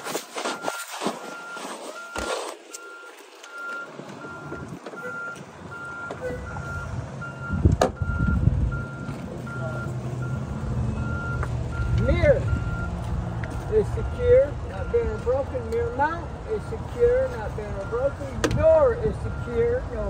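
A truck's backup alarm beeping steadily, about two beeps a second, with a few loud clunks at the start. From about six seconds in, a heavy vehicle engine rumbles low beneath the beeping.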